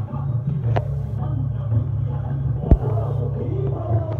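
Devotional aarti music mixed with crowd voices, over a steady low rumble. A sharp knock sounds near three seconds in.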